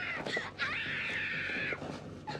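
A young girl screaming: a short high-pitched scream, then a longer steady one held for about a second.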